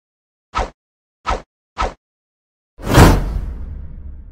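Editing sound-effect whooshes: three short swishes about half a second apart, then a louder whoosh with a deep rumble about three seconds in that trails off.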